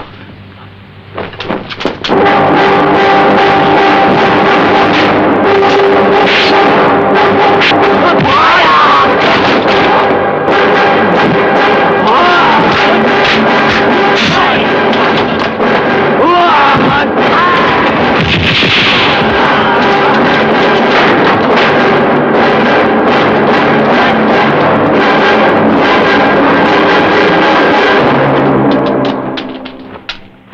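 Kung fu film fight soundtrack: loud, steady background music with dense, rapid punch-and-strike sound effects and fighters' shouts over it. It starts about two seconds in and fades out just before the end.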